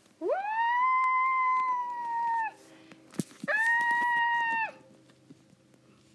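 A high-pitched voice giving two long, wordless wails: the first swoops up and is held for about two seconds, and the second is a shorter held note a second later. A sharp click comes between them.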